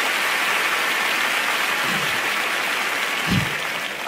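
Large theatre audience applauding steadily, the clapping easing off slightly toward the end, with one short low thump near the end.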